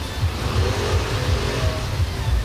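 A car passing on the street, its tyre and road noise swelling and fading in the middle, over a steady low rumble.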